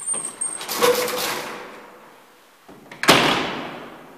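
The collapsible metal scissor gate and landing door of an old gated elevator being worked on the way out. About a second in there is a metallic rattle with a brief ringing tone. About three seconds in comes a loud slam, the loudest sound, which dies away.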